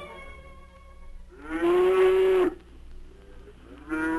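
A cow mooing, a radio sound effect: one drawn-out moo about a second and a half in, lasting about a second and sliding down at its end, then a second moo starting near the end.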